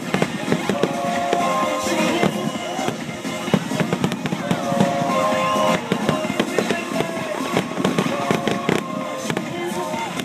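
Aerial fireworks bursting in quick succession, many bangs and crackles overlapping, with music playing alongside.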